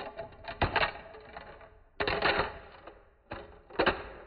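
Bosch X-LOCK angle-grinder cutting and grinding discs dropped one by one onto a wooden workbench. Each lands with a clatter, then a quick run of rattling clicks as it wobbles flat. There are three landings, about a second and a half apart.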